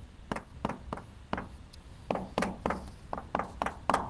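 Chalk writing on a blackboard: a quick, irregular run of sharp taps and short strokes as the chalk strikes and drags across the board.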